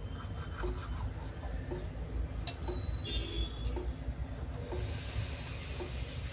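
Toothbrush scrubbing teeth through a mouthful of foam in repeated wet rubbing strokes. There are a couple of sharp clicks about midway, and a steady hiss comes in near the end.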